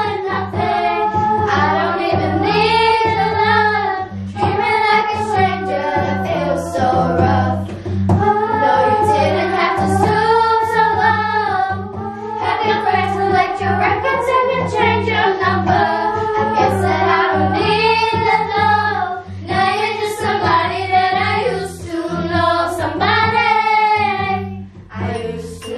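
A group of children singing a song together in unison, accompanied by a strummed acoustic guitar.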